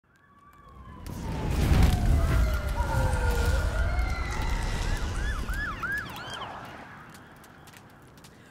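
Sirens wailing in the distance, their pitch sliding slowly down and back up, with a few quick yelps around the middle. Beneath them a low rumble swells in from silence over the first two seconds and fades out near the end.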